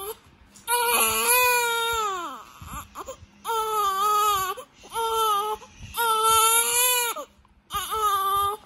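Young infant crying: four long wails with short breaths between them, the first falling in pitch as it ends.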